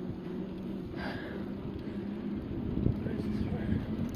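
Wind buffeting the microphone and tyre and road rumble while riding a bicycle, with a steady low hum running through.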